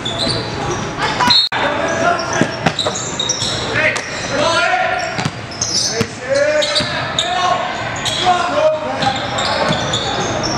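Basketball game play in a gym: shouting voices, the ball bouncing on the court, and echo from the hall. The sound drops out for an instant about a second and a half in.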